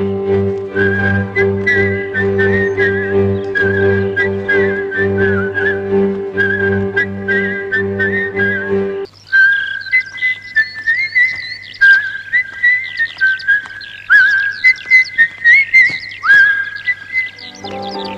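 A person whistling a tune over a steady pulsing bass accompaniment; about halfway through the accompaniment drops out and the whistling goes on alone in short phrases with upward slides, with quick high chirps above it.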